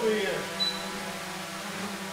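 DJI Mavic 2 Pro quadcopter hovering close by, its four propellers giving a steady many-toned hum. A man's brief voice trails off at the start.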